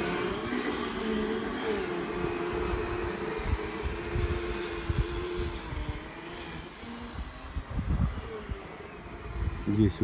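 Steady engine hum of a motor vehicle that fades out about halfway through, over a low irregular rumble.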